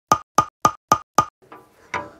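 A ticking-clock sound effect: five even, sharp wooden ticks at about four a second, stopping a little past a second in.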